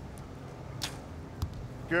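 A compound bow shot: a sharp crack as the string is released just under a second in, followed about half a second later by a second, duller knock.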